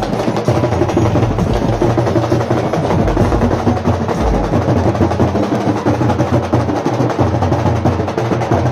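Music of fast, continuous drumming, loud and unbroken.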